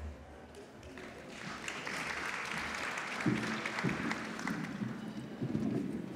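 Audience applauding, building up about a second in and thinning toward the end, with a few low knocks underneath.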